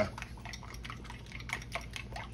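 Metal fork beating egg yolks in a ceramic bowl: light, irregular clicks and taps of the fork against the bowl with a wet slosh, coming quicker in the second half. The yolks are being tempered with hot cornstarch mixture.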